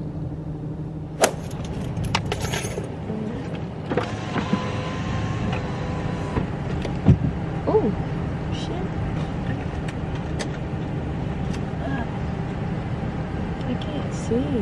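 Steady low hum of a car idling, heard from inside the cabin, with scattered clicks and knocks of things being handled, several of them in the first few seconds.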